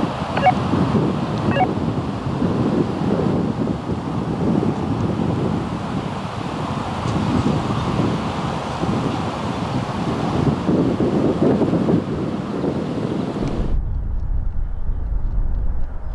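Wind buffeting an outdoor microphone, a rushing, gusting noise. About three-quarters of the way through it cuts off suddenly, leaving a low rumble.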